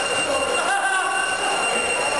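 Electric 1/10 scale RC buggies at an indoor raceway, their motors whining with a short gliding rise and fall in pitch about a second in, over a steady high-pitched tone and voices in the hall.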